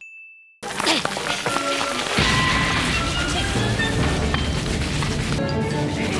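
A single short, steady ding as the on-screen win counter ticks up, then a dense noisy stretch of anime soundtrack that becomes heavier and deeper about two seconds in.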